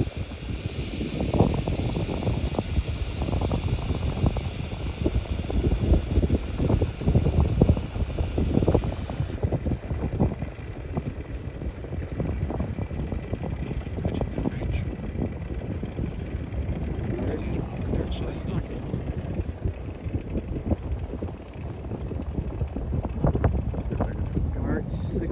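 Gusty wind buffeting the microphone: an uneven, low rumbling noise that swells and fades throughout.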